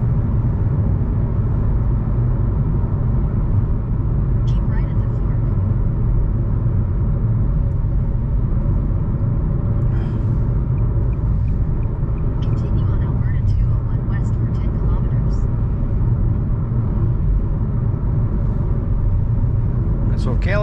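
Steady low drone of engine and tyre noise inside a car's cabin, cruising at highway speed.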